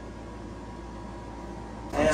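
Steady hum and hiss of a wall-mounted air conditioner running in a small room.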